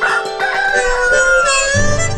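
A rooster crowing cock-a-doodle-doo, the cue that night has turned to morning, over light music. Near the end a sustained harmonica chord comes in.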